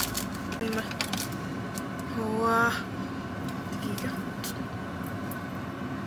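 Steady car-cabin hum with a few light clicks of a small perfume bottle being handled, and a woman's short hummed vocal sound about two seconds in.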